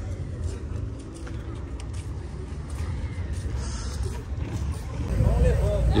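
Car engine running as a low rumble, which grows louder about five seconds in.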